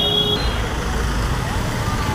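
Street traffic: a car and motor scooters running close by, a low steady engine rumble, with a high steady tone that cuts off about half a second in. Voices sound in the background.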